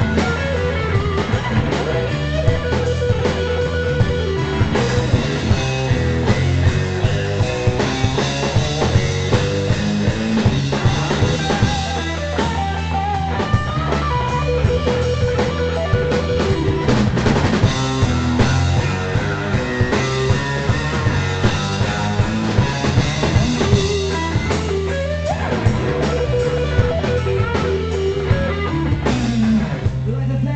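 Live rock band playing an instrumental passage: electric guitar, electric bass and a drum kit with a steady beat.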